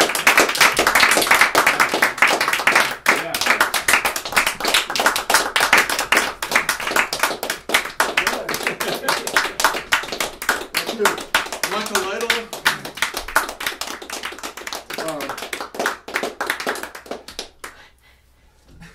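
Applause from a small group of people clapping in a small room, dense at first, then thinning out and dying away just before the end, with voices talking over it.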